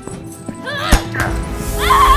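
Fight-scene sound over dramatic film music: a sharp hit about a second in. Then a woman's loud, strained scream with a wavering pitch starts near the end.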